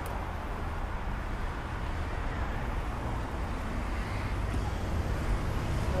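Steady road traffic noise from cars on the street, with a constant low rumble.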